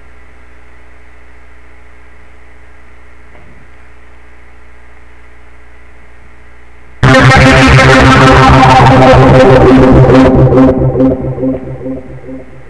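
PoiZone V2 software synthesizer playing an arpeggiator preset: quiet held tones for about seven seconds, then a sudden loud, bright, rapidly pulsing arpeggio that breaks up into stuttering pulses and fades out near the end.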